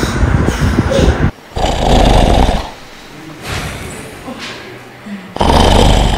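A sleeping man snoring loudly in rough, rumbling snores: a long one at the start, a shorter one about two seconds in, fainter breaths in the middle, and another loud snore near the end.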